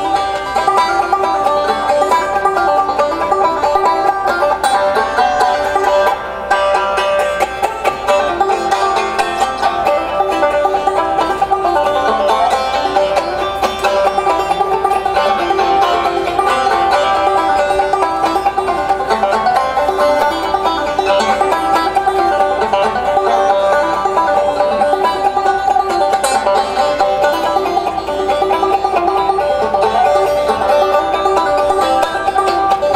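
Solo banjo played on stage: an unbroken run of picked notes in a bluegrass-style tune.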